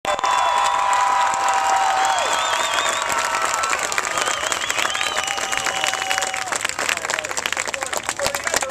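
Stadium crowd applauding and cheering: dense clapping with long whoops and shouts rising and falling above it.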